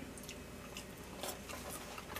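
Faint chewing of French fries, a few soft mouth clicks and smacks spaced out over the two seconds.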